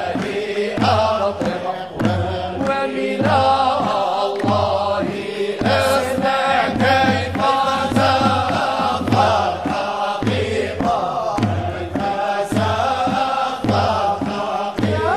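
Sufi samaa chant (madih) sung by a vocal ensemble, with long, bending melodic lines over a steady rhythmic pulse.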